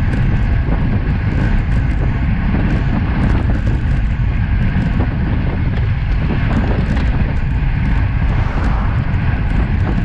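Steady, loud wind rushing over the microphone of a bike-mounted action camera at about 40 km/h, with road-tyre noise underneath and scattered faint ticks.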